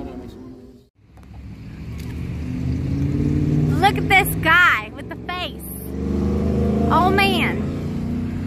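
Road traffic passing: after a brief drop-out about a second in, a vehicle's engine rumble builds and fades, and another swells near the end. Short voice-like calls sound over it twice.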